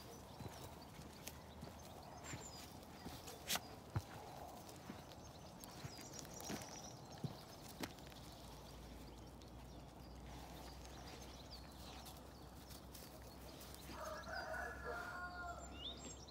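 Quiet open-air farm ambience with faint distant birdsong and a few sharp clicks, then a distant farm animal calling for about two seconds near the end.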